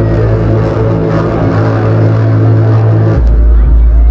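Soundtrack of a building projection-mapping show played over loudspeakers: music with low held notes, giving way about three seconds in to a loud, deep rumble.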